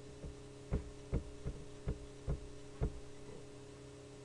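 Six sharp clicks, about two or three a second, from a computer mouse as a PDF page is scrolled down, over a steady electrical hum.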